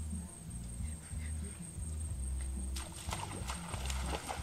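Footsteps splashing through shallow muddy water, starting about three seconds in as a run of quick wet slaps, over a low rumble.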